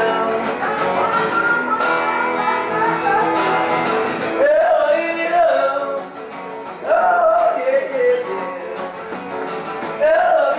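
Acoustic guitar strummed together with an electric guitar, playing a song unplugged, with a male voice singing phrases from about halfway in and again shortly after a brief dip.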